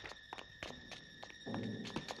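Quick footsteps, a run of sharp, irregular taps, as people hurry away. A low pitched sound, likely the start of music, comes in about three-quarters of the way through.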